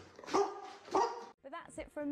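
A large dog barking twice, two short barks about two thirds of a second apart.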